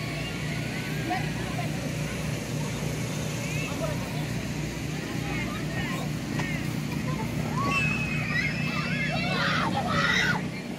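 Steady hum of the electric blower fan that keeps an inflatable bounce slide up, with children's voices and shouts in the background that grow louder near the end.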